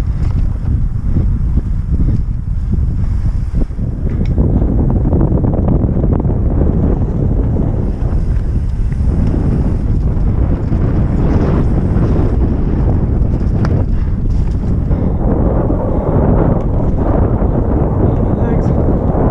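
Heavy wind rushing over the microphone of a camera on a Norco Aurum downhill mountain bike at speed, with tyre noise on the dirt trail. There are occasional sharp clatters from the bike over rough ground.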